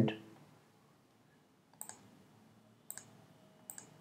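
Three quick double-clicks of a computer mouse, about a second apart, each a pair of short sharp clicks, as folders are opened one after another.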